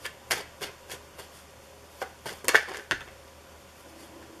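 Tarot deck being shuffled by hand: a string of short card slaps and flicks, sparse at first and loudest in a quick cluster a little past halfway.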